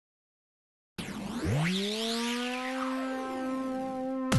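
Electronic music intro: after about a second of silence, a synthesizer tone glides up in pitch and then holds steady, with sweeping whooshes crossing above it.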